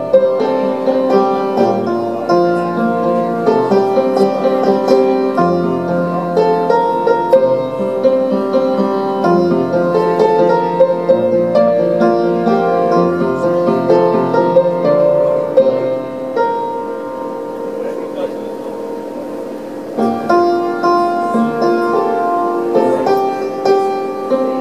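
Upright piano played solo: a flowing instrumental passage of chords and melody that thins out and softens about two-thirds of the way through, then picks up again.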